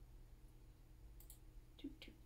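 Near silence with a few faint, short clicks in the second half.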